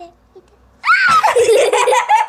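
A person bursting into loud laughter about a second in, starting with a short rising squeal and carrying on loudly to the end.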